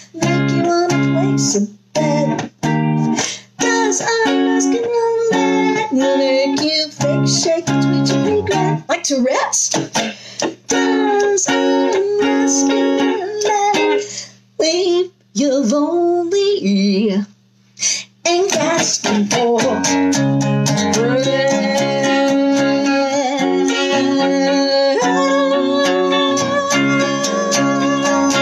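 Electric guitar strumming chords, with several short stops between strums in the first half. From a little past the middle the chords ring on without a break.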